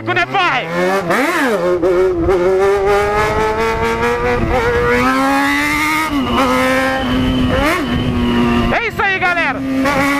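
Yamaha XJ6's inline-four engine with a quick rev blip about a second in, then accelerating up through the gears: the pitch climbs steadily, drops sharply at two upshifts, then settles to a steady cruise.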